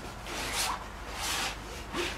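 Steel palette knife scraping through oil paint in two short strokes.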